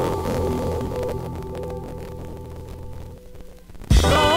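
Early-1970s spiritual jazz recording: the band's held low chord sustains and fades over about three seconds, ending in a sudden loud low hit that opens the next section.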